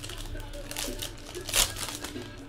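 Foil trading-card pack wrappers crinkling as they are handled and opened, with a louder burst of crinkling near the end.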